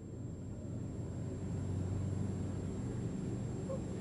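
A low, steady rumble with no words, its energy deep in the bass.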